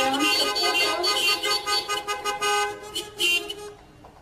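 Toeters (handheld party horns) tooting in long held notes over music in celebration, dying away near the end.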